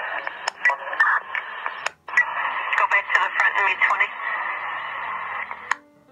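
Chicago Police scanner radio stream playing from a phone's speaker: thin, narrow-band police radio voices with static hiss, breaking off briefly about two seconds in and cutting off near the end.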